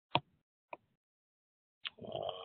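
Three sharp computer-mouse clicks: a loud one just after the start, a fainter one about half a second later, and another near the end.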